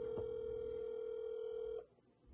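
Ringback tone of an outgoing mobile phone call, heard from the phone's speaker: one steady ring of about two seconds that cuts off sharply near the end, while the call waits to be answered.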